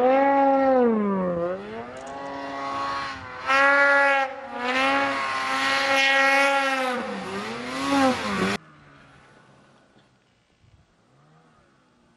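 Snowmobile engine running hard, its pitch dropping and climbing again several times as the throttle is worked. The engine sound cuts off abruptly about two-thirds of the way through, leaving only a faint background.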